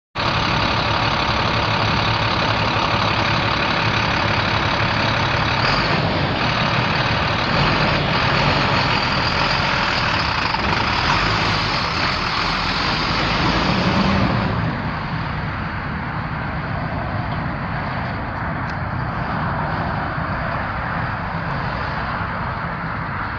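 International DT466 7.6-litre inline-six turbo diesel engine of a 2006 International 4400 truck running steadily. About 14 seconds in, the sound turns duller and a little quieter.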